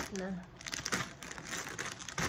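Plastic chip bags crinkling in a series of irregular rustles as a hand lifts and shifts them about in a cardboard box.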